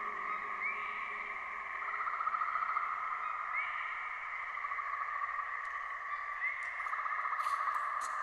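Wordless outro of a slowed, reverb-heavy pop track: a steady, rapidly trilling chirr like frogs or insects, with a short rising chirp about every three seconds and faint clicks near the end.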